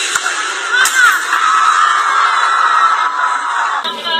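Loud high-pitched screaming in a break in the music: short gliding shrieks about a second in, then a long held scream. Music with a beat cuts back in sharply near the end.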